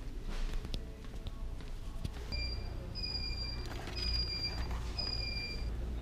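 Four high, steady beeps about a second apart, each sliding slightly down in pitch, over a low steady background hum.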